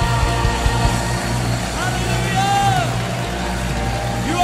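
Live worship music: sustained instrumental chords over a low steady drone. From about two seconds in, a voice sings freely over them in long, arching phrases.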